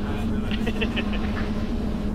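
Cabin noise of the all-electric BETA CX300 at full takeoff power in the climb: a steady low hum from the electric motor and propeller with a steady tone in it. It is quiet enough to hold a conversation without a headset.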